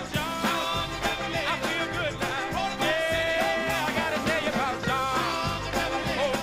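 A live band playing a song, with a singer's voice over drums and instruments.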